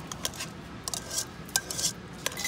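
Wire whisk mashing avocado in a stainless steel bowl, its wires clinking and scraping against the metal in a series of irregular strokes.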